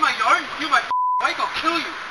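One short, steady censor bleep a little under a second in, replacing a swear word in a man's shouting; the rest of the sound is cut out while the tone plays.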